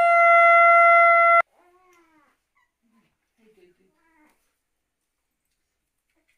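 Conch shell (shankha) blown in one long, steady note that stops abruptly about a second and a half in, the auspicious call of a Bengali Hindu blessing ritual. After it only faint, brief sounds.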